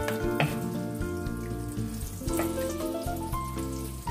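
Butter melting and sizzling in hot cooking oil in a nonstick frying pan, with background music of sustained notes playing over it.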